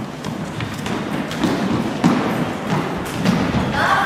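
Scattered thuds and taps of a gaelic football and players' running feet on a wooden sports-hall floor, echoing in the large hall.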